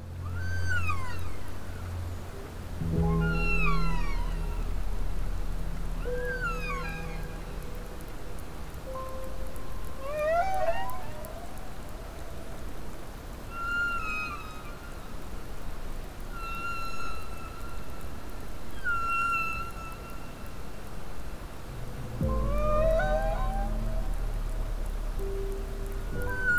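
Humpback whale song: a string of pitched cries, some sweeping down and some sweeping up, with held moans between them. Underneath runs ambient music with low sustained drones that swell in twice.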